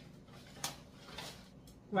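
A single sharp click about two-thirds of a second in, with faint rustling a little later, against quiet room tone.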